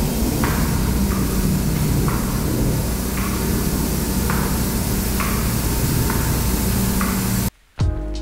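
Two aerosol spray cans hissing steadily, sprayed over wet metallic epoxy, with background music under it; the hiss cuts off suddenly shortly before the end.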